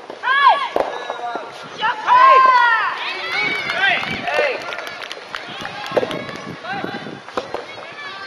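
Loud shouted calls during a soft tennis rally, drawn-out and rising and falling in pitch, loudest about two seconds in. A few sharp pops of the racket striking the soft rubber ball come through, one about a second in and two more later on.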